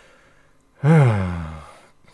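A man's voiced sigh, one drawn-out exhale whose pitch falls steadily and fades, starting a little under a second in.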